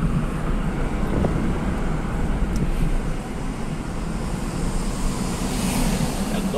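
Inside a moving car: a steady low rumble of engine and tyres on the road, with some wind noise.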